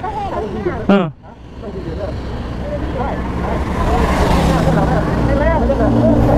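Motorcycle engines running at idle beside a wet road, with a vehicle passing and its hiss swelling toward the end. A short loud sound with a falling pitch comes about a second in.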